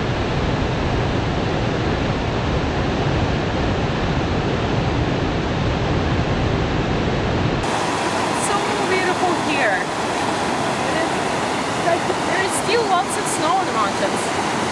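Steady rush of white water from a mountain waterfall, full and deep. About eight seconds in it gives way to a fast creek tumbling through rapids, with less depth to the sound and faint voices under it.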